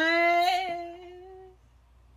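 A man's voice holds one drawn-out note, like a hummed or sung "ooh", for about a second and a half. It fades away toward the end.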